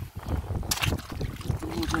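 Footsteps crunching over loose river pebbles, with stones clacking together in irregular sharp clicks, the loudest about two-thirds of a second in, over a low rumble of wind on the microphone.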